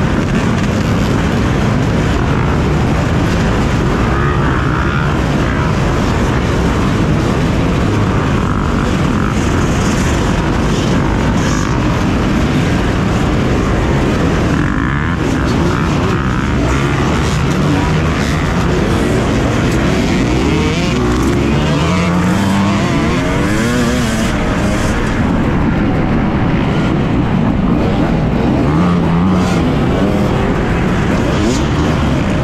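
A large pack of off-road dirt bikes racing off from a mass start, many engines running hard together, the rider's own two-stroke KTM 250 EXC among them. Engines rev up and down repeatedly in the second half as riders work through a corner and onto the straight.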